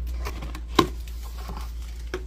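Cardboard figure box being opened by hand: one sharp snap just under a second in as the lid flap pulls free, with light scraping and rustling of the cardboard around it.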